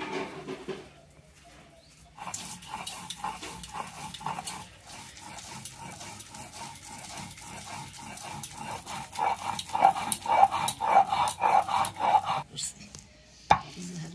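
Stone roller rubbed back and forth on a stone grinding slab (shil-nora), grinding coriander leaves into a paste: a rhythmic scraping at about two to three strokes a second. It grows louder in the last few strokes and stops about twelve seconds in, followed by a single sharp knock.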